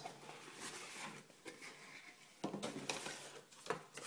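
Cardboard retail box being opened and its packaging handled: faint, irregular rustling and scraping of cardboard and paper, with a sharper scrape about two and a half seconds in.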